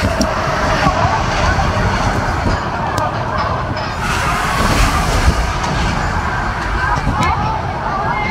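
A spinning disc ride running along its curved track, a steady loud rumble with voices of riders and onlookers mixed in.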